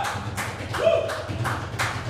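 Sparse applause from a small audience: a handful of people clapping, irregular and distinct claps rather than a dense roar.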